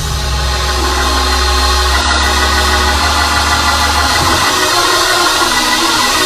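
Sustained organ chords with a steady low bass note that drops out about four seconds in, over the noise of a large congregation responding.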